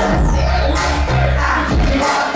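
Loud music over a nightclub sound system, with a heavy bass line and a steady beat.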